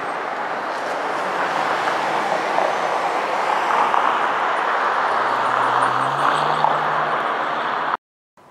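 Road traffic: a steady, loud rush of passing vehicles, with a vehicle engine's low hum joining about five seconds in.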